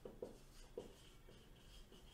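Faint strokes of a marker pen writing on a whiteboard: a few short scratching strokes.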